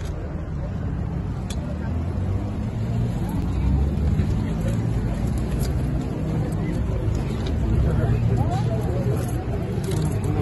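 Street traffic and a car's engine running at low speed, with a crowd of people talking and calling out close around it, the voices growing busier near the end.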